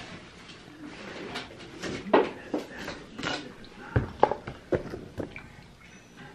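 A toddler slurping and smacking her lips as she sucks fruit jelly out of small plastic cups: a run of short, wet clicks and smacks, several a second at times.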